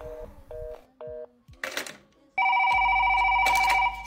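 A telephone line gives three short paired-tone beeps in the first second or so, then there is a click. From just past halfway a loud, steady telephone ring starts and keeps going: the phone is ringing again.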